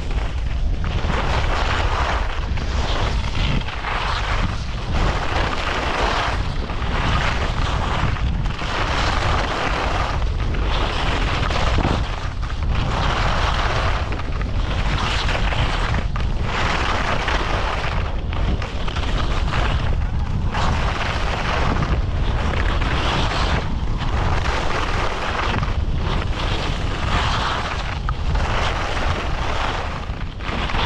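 Skis scraping and hissing over packed, chopped-up snow, the rasp swelling and fading with each turn about once a second. Under it is a steady low rumble of wind on the microphone at around 30 km/h.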